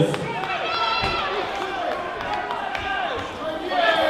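Boxing coaches and the crowd shouting over one another, several voices at once, with a couple of sharp thuds of gloved punches landing, one right at the start and one about a second in.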